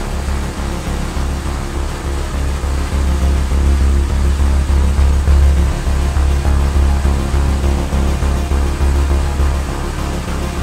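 David Brown tractor engine running at a steady road speed: a constant low drone that holds one pitch throughout.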